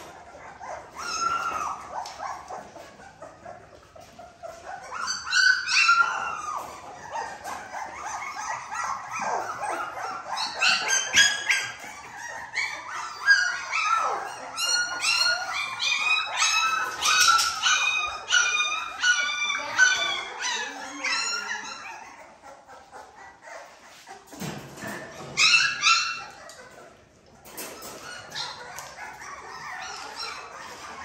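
A litter of 3.5-week-old puppies whining and yelping in short, high-pitched cries while they crowd the mush pans, the cries thickest through the middle stretch and flaring again briefly near the end.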